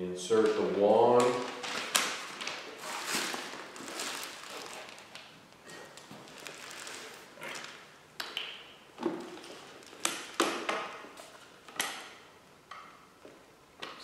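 Handling noise from assembling a pressure washer's spray wand and gun: irregular rustling with several sharp clicks and knocks, most of them bunched between about nine and twelve seconds in. A man's voice is heard briefly at the start.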